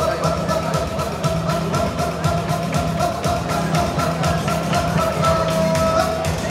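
Up-tempo music with a steady, fast drum beat under a long held note.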